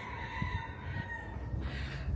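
A bird call: one long, held note of nearly steady pitch lasting about a second and a half, over a low, steady rumble.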